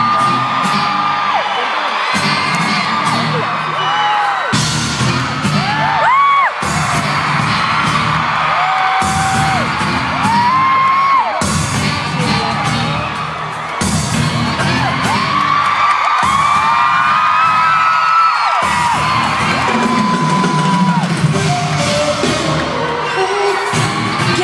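Live pop music played loud through an arena PA, with many fans screaming long, high screams over it.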